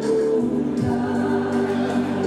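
Music with a group of voices singing together in harmony over a low instrumental backing, the accompaniment to a Tongan dance.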